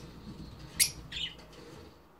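Rosy-faced lovebird giving two short, high-pitched chirps about a second in, the first loud and sharp, the second softer a moment later.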